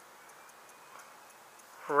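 Quiet background with faint, regular ticking; a man's voice begins right at the end.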